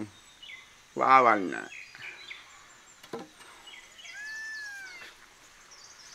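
A bird's whistled call, arching up and then gliding down, about four seconds in, over quiet outdoor background; a short voiced exclamation comes about a second in.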